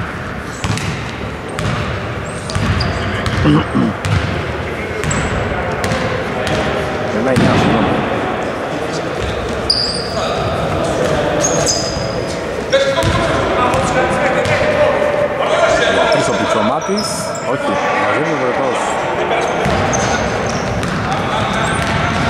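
Basketball bouncing on a hardwood court as it is dribbled up the floor, mixed with voices and short high squeaks, all echoing in a large, nearly empty gym.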